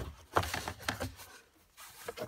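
Cabin air filter and its plastic housing handled by a gloved hand: several short plastic clicks with light rubbing and rustling between them. The loudest click comes about a third of a second in.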